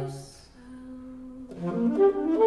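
Free-improvised music for saxophone and voice: a low held note dies away in the first half second, a single soft note is held for about a second, and then new wavering notes enter near the end.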